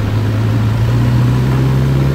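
Honda CB1000R's inline-four engine running steadily under way, its low hum rising slightly in pitch about halfway through.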